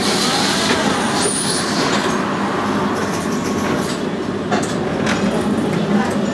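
Steady running noise inside a tram: a low hum under an even rumble, with a brief high squeal early on and a couple of faint clicks near the end.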